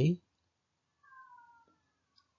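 The end of a spoken word, then a faint, short falling whine about a second in, lasting under a second.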